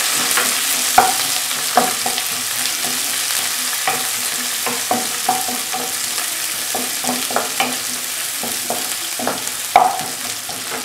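Shallots, garlic, dried red chillies and curry leaves sizzling in oil in a nonstick wok, stirred with a wooden spatula that scrapes and taps against the pan at irregular intervals. The loudest knocks come about a second in and near the end.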